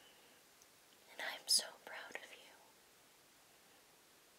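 A voice whispering a few words, about a second in, against quiet room tone.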